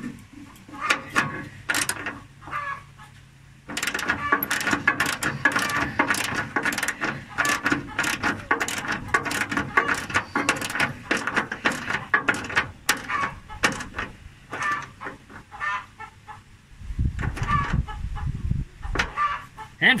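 Hand socket ratchet clicking in runs of strokes as the radiator mounting bolts are tightened.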